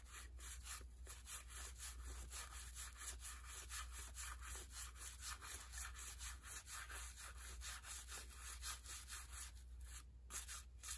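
1984 Donruss cardboard baseball cards being thumbed through one by one by hand, a faint, quick, even run of soft flicks and rubs as each card slides off the stack.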